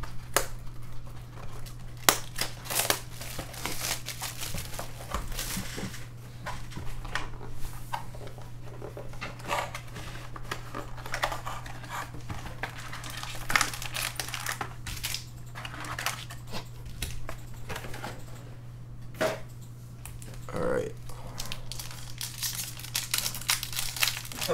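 Plastic and foil wrappers of football card packs crinkling and tearing as they are opened by hand, in irregular crackly bursts over a steady low hum.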